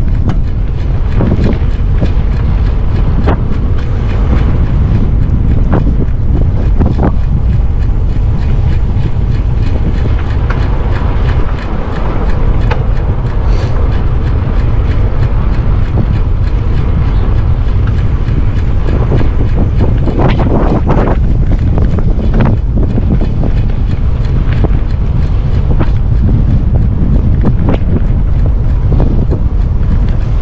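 Strong wind buffeting a camera microphone on a moving e-bike, a loud, steady low rumble, with occasional small clicks and rattles.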